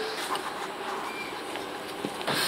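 Steady low background noise of a large indoor car park, with a faint short beep about a second in.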